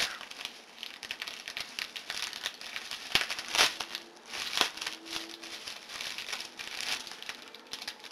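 Plastic bubble wrap crinkling and crackling as it is pulled open by hand, with irregular sharp crackles throughout.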